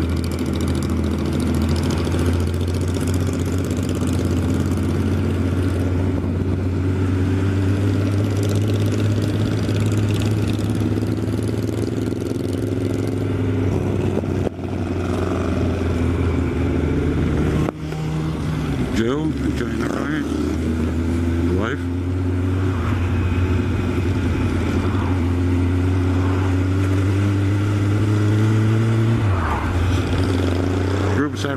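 Honda CB1100SF X-Eleven's inline-four engine running steadily under way, heard from the bike together with wind rush. The engine sound dips briefly twice about halfway through, and a few seconds later the engine pitch swings up and down several times.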